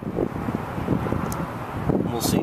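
Wind buffeting the microphone, an uneven low rumble, with one brief sharp click about halfway through.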